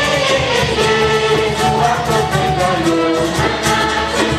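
A group of young people singing an African worship song together in chorus, led by a male voice on a microphone, sung loudly over a regular beat.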